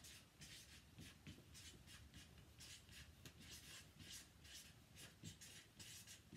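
Felt-tip marker writing on a paper chart pad: a faint run of short strokes, a few a second.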